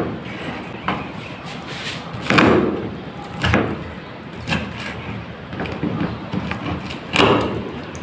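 A series of knocks and thuds at uneven intervals, about one a second, the biggest with a short ringing tail.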